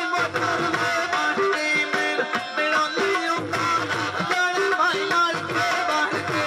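Live Punjabi mahiya folk music: a held, steady melody line over a regular drum beat.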